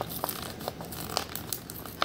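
Card-and-plastic blister packaging of a die-cast toy car being handled and worked open, with scattered crinkles and clicks.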